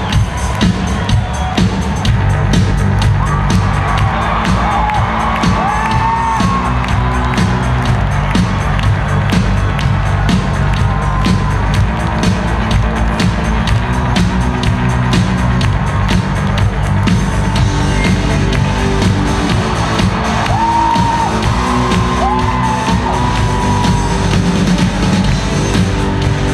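Drum kit played live at a rock concert: a steady run of rapid drum and cymbal hits. Audience whoops rise over it a few seconds in and again near the end.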